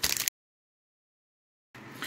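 A brief noisy burst, then the audio cuts out to dead silence for about a second and a half, as at an edit in the recording, before faint background noise returns near the end.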